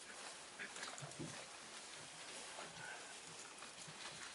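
Faint room tone with a few brief, indistinct murmurs of voices.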